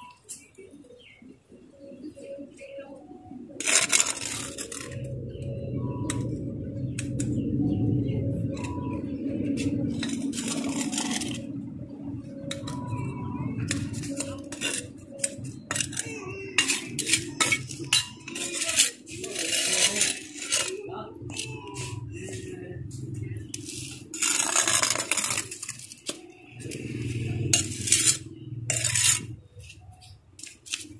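Steel mason's trowel scraping and clinking against a metal pan of cement mortar and concrete blocks as blocks are laid, with many short clinks and a few longer scrapes about four, ten and twenty-five seconds in.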